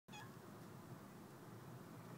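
Near silence: faint, steady background hiss, with one very brief, faint pitched call right at the start.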